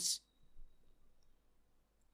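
Near silence, room tone only, after a spoken word trails off at the very start, with one faint click about half a second in.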